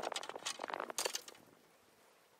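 Handling noise: a quick run of clicks and rustles as a fishing rod and gear are moved about, dying away about a second and a half in.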